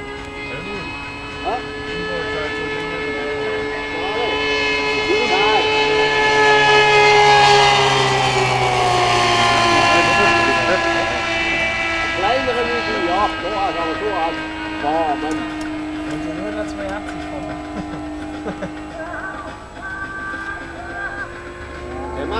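O.S. Gemini twin-cylinder four-stroke glow engine of a large model aircraft, driving a pusher propeller in flight. It grows louder as the plane comes in on a low pass, then drops in pitch as it goes by about halfway through and runs on steadily as it flies off.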